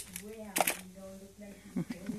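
A person's voice talking quietly, with a couple of short clicks or rustles partway through.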